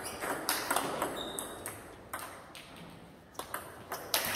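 Table tennis ball clicking off rackets and bouncing on the table during a serve and its return: a quick, uneven series of about eight sharp clicks.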